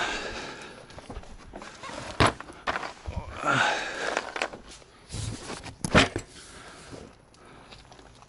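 Footsteps on loose dirt and gravel, with a few sharp knocks or scuffs.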